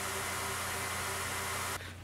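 Belt grinder running with a steady hiss as it grinds the edge of a Kydex sheath, melting the plastic. The sound cuts off abruptly near the end.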